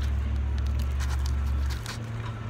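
A person chewing a mouthful of crusty pizza, with faint crunchy clicks, over a loud, steady low rumble on the microphone that stops shortly before the end.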